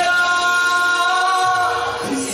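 A man singing into a handheld microphone, holding one long note that ends near the end.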